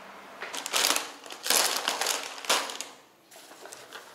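Grocery bag and packaging crinkling in several loud bursts, starting about half a second in and dying down by about three seconds in.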